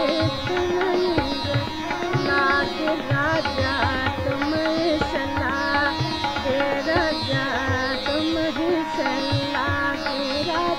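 A female vocalist sings a Pahari dadra in raga Khamaj, in Hindustani light-classical style. Her melodic lines bend and glide with ornaments over continuous instrumental accompaniment, with short low drum strokes recurring beneath.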